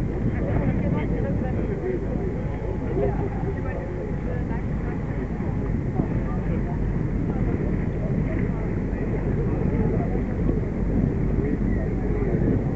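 A steady motor rumble with muffled, indistinct voices over it.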